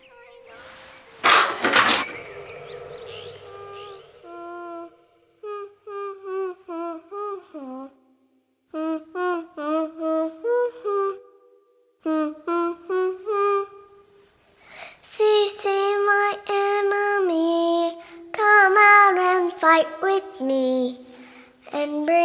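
A sudden loud burst of noise about a second in, then a high voice singing a melody in short phrases with brief pauses between them, louder in the second half.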